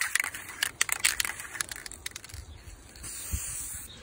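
Irregular crackling clicks for the first two seconds, then a short hiss of an aerosol can of Krylon UV archival varnish spraying for about a second near the end, with wind rumbling on the microphone.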